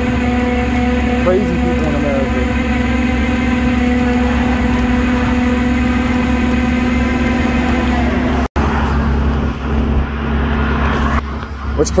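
Tow truck engine idling, a steady hum. About eight and a half seconds in it cuts out abruptly for an instant and comes back with a lower, altered tone.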